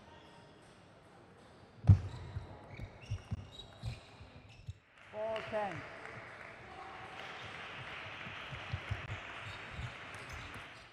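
Table tennis ball hit back and forth and bouncing on the table: a quick run of sharp knocks about two seconds in, the first the loudest. The rally stops, a short shout follows about five seconds in, and then a steady background hiss with a few faint knocks.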